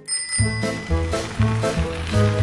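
A short, bright chime rings at the start, then the show's intro jingle comes in about half a second later, carried by a repeating bass line.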